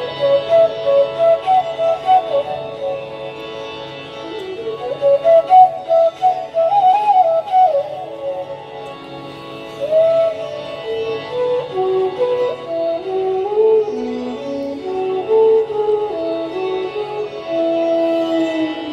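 Hindustani classical instrumental performance of a raag: a solo melodic line with pitch glides and bursts of quickly repeated notes over a steady drone.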